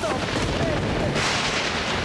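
Thunder over heavy rain in a storm, a loud crack swelling about a second in.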